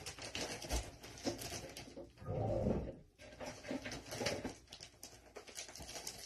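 Pine-scented laundry paste being squished by hand: dense crackling squishes, with a louder, lower squelch a little past the middle.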